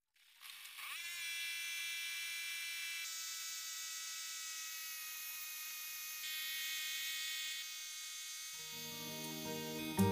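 Mobile rice huller machine running under load with a steady high whine and buzz, which shifts slightly a few times. Near the end, guitar music comes in over it.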